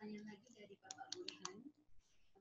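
Faint murmured speech away from the microphones, with a quick run of five or six sharp clicks about a second in.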